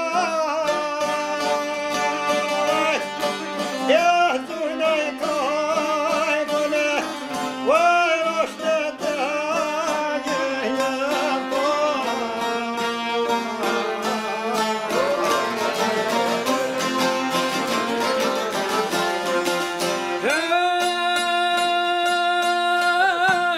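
A man singing an Albanian folk song in a full, strained voice, accompanied by a plucked long-necked lute. Near the end a note is held.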